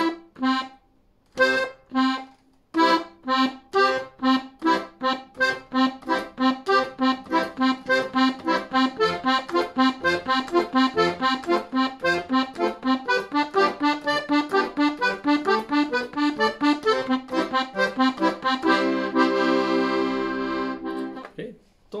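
Hohner Verdi II piano accordion playing an arpeggio accompaniment pattern. A few separate short notes are followed by a fast, even run of short detached notes, ending on a held chord near the end.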